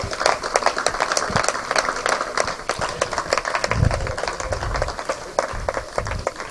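Applause from a small audience: irregular, overlapping hand claps that keep going steadily.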